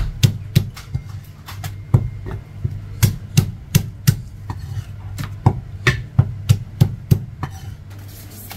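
Cleaver chopping a cooked chicken into pieces on a round wooden chopping block: a series of sharp chops, about three a second in short runs with brief pauses, stopping shortly before the end. A steady low hum runs underneath.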